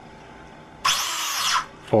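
Small electric motor of a radio-controlled vehicle whining briefly as it runs in response to a command, its pitch rising and then falling.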